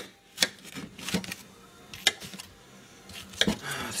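Serrated kitchen knife slicing an apple in half on a countertop, with several sharp knocks of the blade and fruit on the surface.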